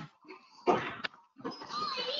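Stray noises coming over a participant's unmuted microphone in an online call: a short breathy, snort-like burst from about half a second in, a sharp click, then a voice-like sound with a wavering pitch near the end. These are the unwanted background noises the lecturer wants muted.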